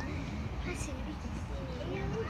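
Faint background voices, people talking quietly at a distance, over a low steady hum.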